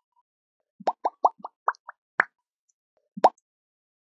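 Cartoon pop sound effects from an animated video outro, one for each icon popping onto the screen. There is a quick run of about eight short pops in under a second and a half, then a single pop about a second later.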